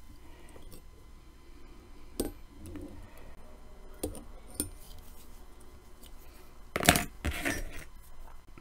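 Scattered small metallic clicks and taps of fly-tying tools being handled at the vise as a half hitch is made with the bobbin thread and a wire half-hitch tool, with a louder pair of knocks about seven seconds in.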